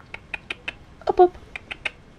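Young guinea pig giving a string of short, sharp, high squeaks, about nine of them unevenly spaced.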